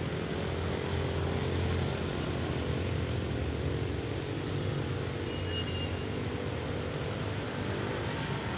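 Steady low drone of road traffic with engine hum from passing motorbikes and cars. It is strongest in the first half and eases later on.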